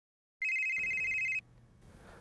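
Mobile phone ringing: a single steady electronic ring about a second long, starting after a moment of dead silence and followed by faint room tone.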